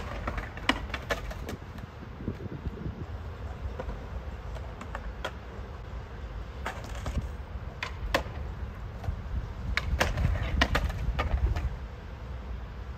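Skateboard wheels rolling on skatepark concrete, a steady low rumble that swells near the end, broken by about eight sharp clacks of the board.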